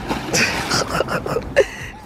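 Swimming-pool water splashing and churning right after a child's cannonball jump, as he surfaces and paddles in arm floats, with a sharp slap about a second and a half in.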